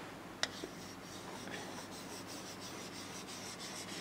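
Faint rubbing and scratching of a stylus drawing on an interactive touchscreen display, with one sharp tap of the pen tip about half a second in.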